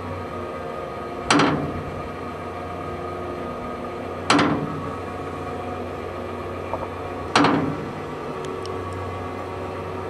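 Hose-reel irrigator with a rain gun in operation: a steady hum of water under pressure, broken about every three seconds by a sharp clack that dies away within half a second, in the rhythm of the rain gun's swing arm.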